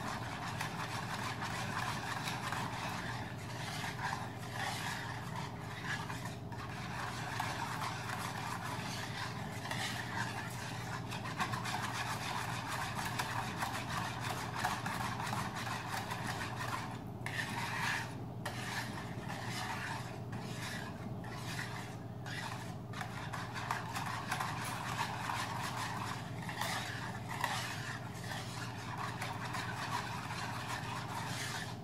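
Wire whisk beating a runny yogurt mixture in a plastic bowl: a steady scraping swish of the wires against the bowl and through the liquid, with a few brief pauses a little past halfway.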